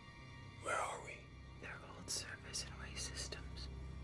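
Hushed whispering in short breathy phrases over a low, steady drone of dark ambient score.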